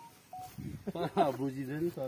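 Men talking in conversation, with two brief single-pitch beeps, the second lower than the first, in the first half second.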